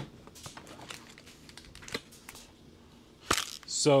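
Quiet handling of packaging, with small taps and clicks, then a short sharp crinkle of a plastic bag a little after three seconds as the bagged sample filament spool is picked up.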